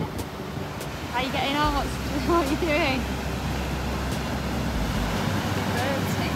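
Surf breaking and washing up the beach, with wind buffeting the microphone. Two short pitched calls come between about one and three seconds in.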